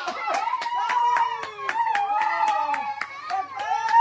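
A group of children clapping their hands in a quick, uneven run, several claps a second, while excited children's voices call out and hold a long shout over the clapping.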